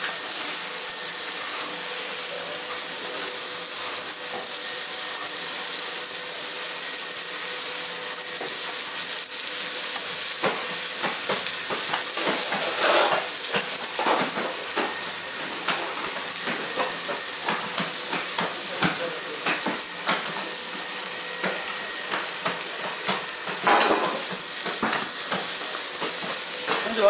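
Sliced vegetables (green pepper, carrot, onion) sizzling as they stir-fry in a wok over a gas burner. A steady hiss runs throughout, with clicks and scrapes of a utensil against the pan, more frequent and louder in the second half.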